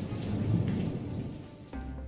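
Thunderstorm sound effect: a rumble with a rain-like hiss that fades away. Near the end, soft steady music tones come in.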